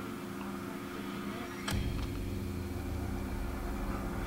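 Dark horror-film sound design from a music video's intro: a low, steady droning hum, then a sudden sharp hit a little under halfway through that gives way to a deep, sustained rumble.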